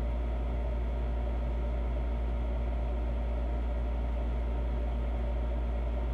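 Steady low hum of a running machine, with a few faint steady tones above it and no change throughout.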